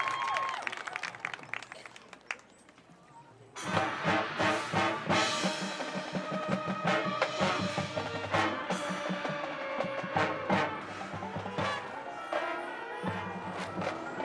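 Crowd clapping and cheering die away to a brief hush, then about three and a half seconds in a high school marching band comes in all at once with brass and percussion, including timpani, and keeps playing.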